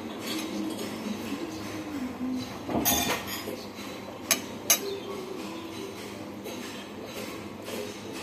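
Two sharp clinks of a utensil against a dish, about four and a half seconds in, after a brief rustle near the three-second mark.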